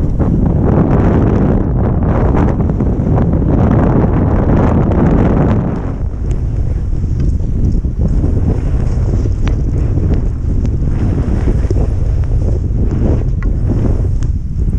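Wind buffeting a GoPro camera's microphone during a fast ski run through powder snow, with skis running through the snow; a steady rushing noise, heavier in the first half and lighter in the second.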